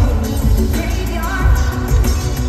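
Live pop song: a woman's lead vocal sung into a microphone over a band with heavy bass, loud through a concert PA and heard from the crowd.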